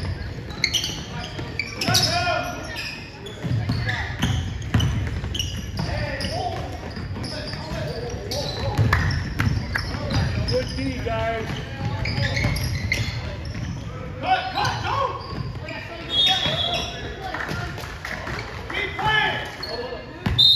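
Basketball being dribbled on a hardwood gym floor, with players' running footsteps and shouted calls, echoing in a large gym.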